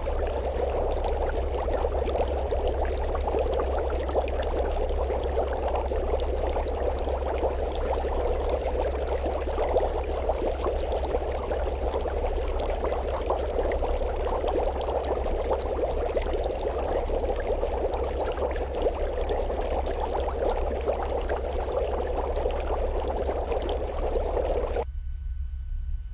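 Running water: a steady, even rush over a low steady hum.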